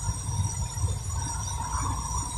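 Car interior road noise while driving: a steady low rumble of engine and tyres, with a faint steady tone above it.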